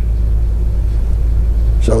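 A steady low hum, with no other sound until a man's voice resumes near the end.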